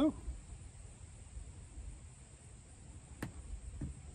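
A short, sharp click about three seconds in, with a fainter one just before the end, as a small grommet is pushed into a freshly drilled hole in a plastic kayak hull. Faint, low outdoor background noise lies underneath.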